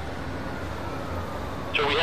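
A steady low rumbling drone once the music has stopped, with a faint thin tone slowly rising through it. Near the end a man's voice begins, sounding filtered like a radio transmission.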